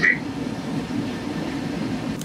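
Steady low rumble of machinery inside a warship's compartment.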